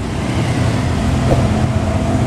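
Honda Astrea Star's single-cylinder four-stroke engine idling steadily.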